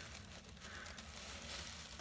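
Faint rustling and crinkling of a thin plastic shopping bag being handled.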